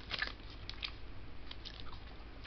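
Soft, scattered crackles and clicks of a clear plastic cheese package being handled in the fingers.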